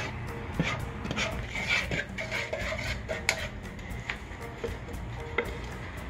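Wooden spoon stirring and scraping in a metal saucepan of melted butter and brown sugar, with irregular light knocks of the spoon against the pan. Faint background music plays underneath.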